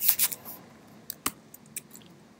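Computer keyboard keystrokes: a quick run of key clicks at the start, then a few single, separate key presses.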